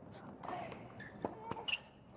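A tennis ball being struck by racquets and bouncing on a hard court during a rally: a few sharp, short pops in the second half, over a low murmur of spectators' voices.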